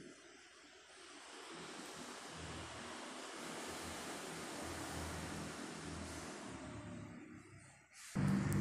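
Faint, even rushing noise with no clear source, swelling gently through the middle and fading away near the end.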